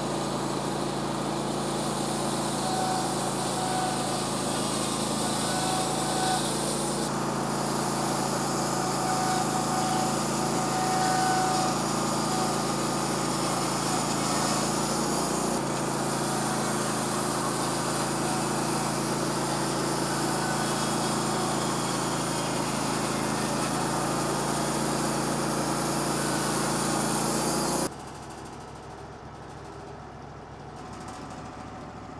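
Wood-Mizer LT15 WIDE portable band sawmill running steadily, its band blade cutting through a small eastern red cedar log. Near the end the sound drops suddenly to the quieter sawmill engine idling.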